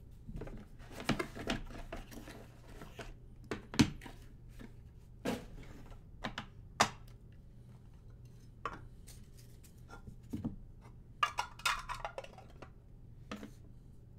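Trading cards in hard plastic holders being handled and set down on a table: scattered sharp clicks and taps, the loudest about four seconds in and a quick flurry about eleven to twelve seconds in, over a faint steady hum.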